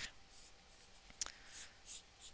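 Faint scratchy rubbing of a Crayola marker tip colouring the surface of a sticky-back craft foam stamp, with one light click a little past the middle.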